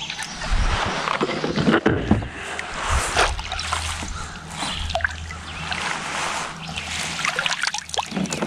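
Water splashing as a small hooked bass thrashes at the surface beside a kayak, then sloshes as it is scooped up in a landing net near the end.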